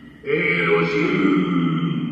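A voice chanting a long held note at a steady pitch. It starts about a quarter second in and breaks off just after the end, heard as a cartoon soundtrack played back in a room.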